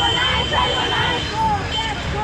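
Several women's voices shouting and arguing over each other in a tense face-to-face confrontation. A steady high whistle-like tone holds through the first second and a half, stops, then sounds again briefly near the end.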